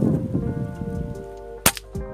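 Background music, with a single sharp crack about one and a half seconds in: the shot of a PCP air rifle.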